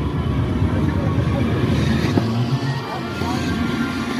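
Busy amusement-fair noise: loud music with a heavy low rumble and voices mixed in, with a single short knock about two seconds in.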